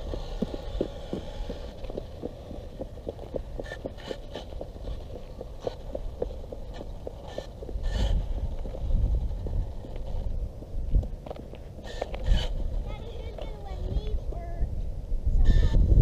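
Outdoor rumble on the microphone with many scattered short clicks and taps, and a faint voice near the end.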